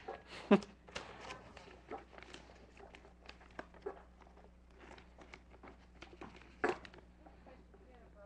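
Handling noises: a scatter of light clicks, knocks and rustles as objects are picked up and set down. The loudest knocks come about half a second in and again near the end.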